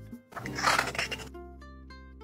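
Light background music with plucked-string notes stepping through a melody. Near the start, a brief rasp of zigzag-blade craft scissors cutting through cardstock.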